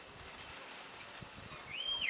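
Faint rustling of a clear plastic bag being opened and handled, with a brief high-pitched rising tone near the end.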